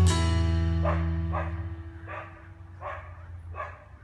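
The last chord of acoustic guitar music rings out and fades, while a small dog yaps about five times, short and evenly spaced.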